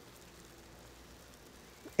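A faint, even hiss of background noise, with no distinct events.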